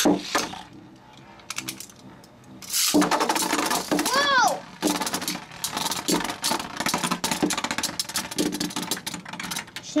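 Two metal-wheeled Beyblade spinning tops launched into a clear plastic stadium. The first goes in at the start and spins quietly. The second is launched about three seconds in. From then on there is rapid clicking and knocking as the tops clash with each other and skid against the plastic bowl.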